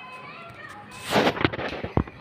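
Handling noise on the recording camera: a loud, rough burst of rustling about a second in, followed by two sharp knocks, as the camera is grabbed and moved.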